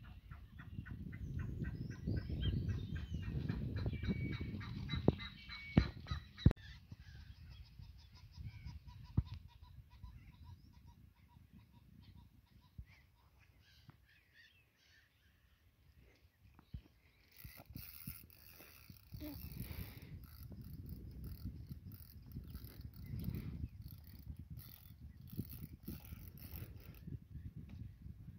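Wind buffeting the microphone, with a bird giving a fast run of honking calls during the first few seconds and a few sharp knocks around five to six seconds in. Later the wind returns under faint, rhythmic high-pitched chirping.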